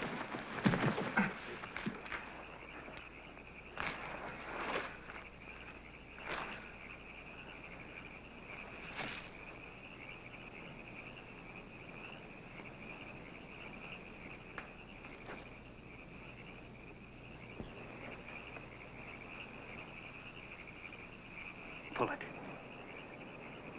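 Scattered scuffs and rustles of a person moving in dirt and brush during the first several seconds, over a steady high-pitched drone.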